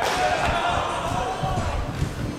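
A bat cracks a baseball in fielding practice right at the start, followed by a player's long shouted call.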